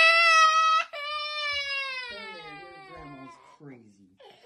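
Toddler crying hard: one long high wail, a brief break just under a second in, then a second long wail that slowly falls in pitch and fades away.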